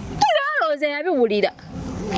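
A person's drawn-out, high-pitched, wavering vocal exclamation, lasting a little over a second, that rises and falls in pitch.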